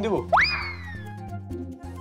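A comic swoop sound effect over background music: one quick upward whoosh that then glides slowly down in pitch.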